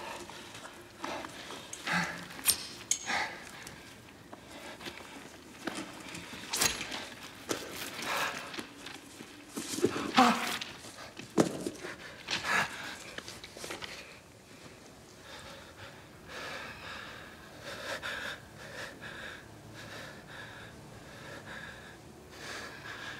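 A man panting and gasping, with scuffs and rustles of clothing and gravel as his leg and shoe are handled; one louder gasp or groan about halfway through.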